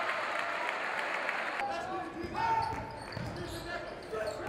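Crowd noise in a packed basketball gym, cut off abruptly about one and a half seconds in. Court sound follows: players shouting and a basketball being dribbled on the hardwood floor.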